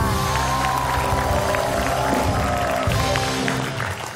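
TV show theme music, long held chords over a heavy bass, with a studio audience clapping; the music stops near the end.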